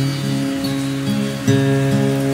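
Acoustic guitar accompaniment between sung lines: a chord rings on, and a new chord is strummed about one and a half seconds in.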